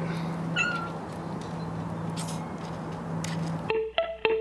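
Cat giving one short, high meow about half a second in, over a steady low hum. Plucked guitar music cuts in near the end.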